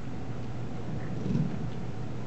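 Steady low hum of a hall's background noise, picked up through the microphone during a pause, with a slight swell about one and a half seconds in.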